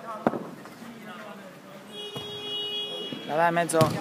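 A football kicked sharply about a quarter-second in, with distant shouts of players. A steady high whistle-like tone lasts about a second in the middle, and another kick comes just before the commentator's voice starts up near the end.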